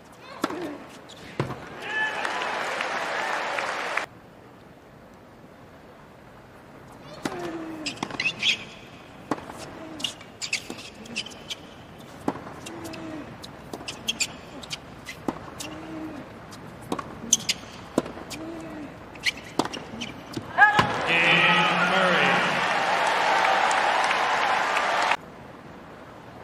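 Tennis rally: a long run of sharp racket hits and ball bounces on a hard court, with short player grunts. Crowd noise rises before and after the rally and is cut off suddenly each time. The second burst is loud cheering and applause when the point is won.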